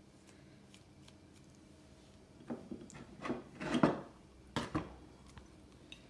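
A metal butter knife being handled and wiped down: a few short knocks and rubbing scrapes in the second half, the loudest about four seconds in.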